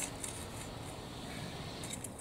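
Long-handled garden rake scratching through loose soil, drawing it up around potato plants to earth them up, with a few faint scrapes near the start and again near the end.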